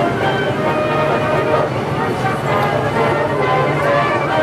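Outdoor park background music with bell-like chiming tones, over the chatter of a crowd of people.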